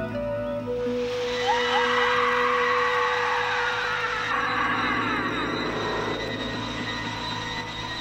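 Eerie horror-film score: sustained organ-like synthesizer tones with a shrill, warbling layer that swells in about a second in and fades toward the end.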